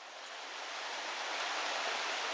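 Rushing creek water fading in, a steady hiss of water running over rocks that grows louder over about the first second.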